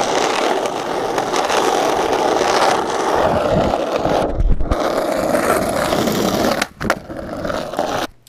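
Skateboard wheels rolling over rough, cracked asphalt, a loud, steady gritty rolling noise. It breaks off briefly about four and a half seconds in and again near seven seconds, with a couple of sharp clacks.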